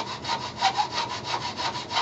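Small frame saw cutting a piece of wood held in a bench vise, with quick, even back-and-forth strokes.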